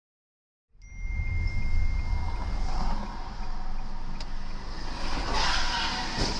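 Car driving noise picked up by a dashboard camera inside the cabin: a steady low engine and road rumble with a faint constant electronic whine, starting abruptly about a second in after silence. A louder noisy burst comes about five and a half seconds in.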